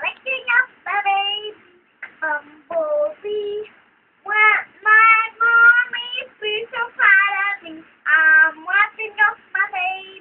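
A young girl singing in a high voice, in phrases with a couple of short breaks.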